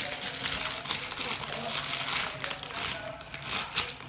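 Plastic wrapping of a squishy toy crinkling as it is handled, an irregular run of crackles.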